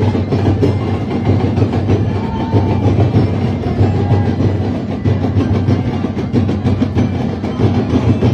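Live Sinulog percussion band drumming a steady, dense beat to accompany a ritual street dance.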